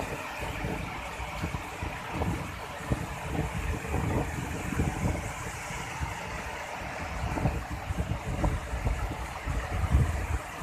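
Steady rushing of a rocky river's white-water rapids, with wind buffeting the microphone in irregular low gusts.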